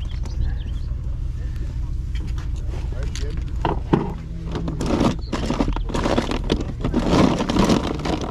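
Plastic toy figures clattering in a plastic crate as they are picked through by hand, the clicks growing dense in the second half, over a steady low rumble.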